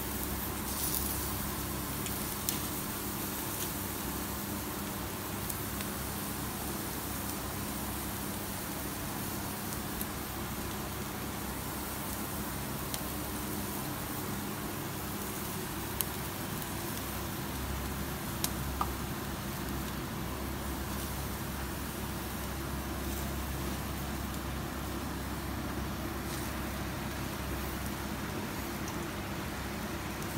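Commercial gas-and-charcoal yakitori grill running with chicken skewers cooking on it: a steady hiss and hum of burners and fan, with a few faint pops and crackles now and then.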